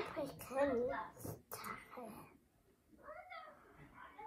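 A young boy's voice murmuring and whining to himself, with a wavering pitch for about two seconds, then a short sound again about three seconds in.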